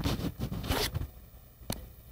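A few quick rasping, zipper-like scrapes in the first second, then a single sharp click.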